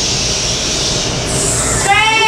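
A long 'shhh' from a teacher shushing a class of children, shifting to a higher 'sss' hiss a little past halfway, over the low murmur of the room.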